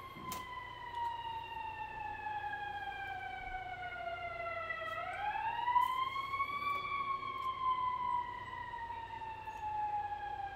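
Fire truck siren wailing close by: one slow wail that falls in pitch, rises again about five seconds in, then falls slowly once more.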